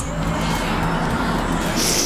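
Road traffic: a motor vehicle going by on the street, a steady engine hum and tyre noise, with a short hiss near the end.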